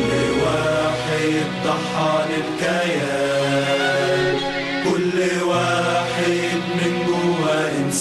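Music: a song sung in Arabic with chant-like vocals, long held notes over sustained accompaniment.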